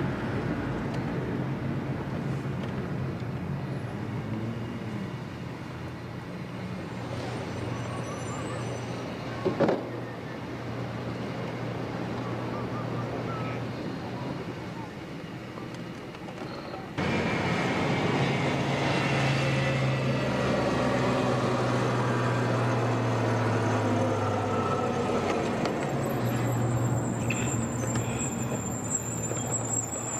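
Car road noise heard from inside the cabin: a steady low engine hum under tyre and road rush, with one sharp knock about ten seconds in. Around seventeen seconds in, the noise suddenly steps up louder and stays there.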